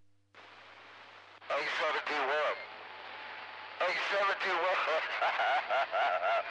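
CB radio receiver picking up another station: a hiss of static opens about a third of a second in, and a voice comes through it over the speaker in two stretches, the second running past the end.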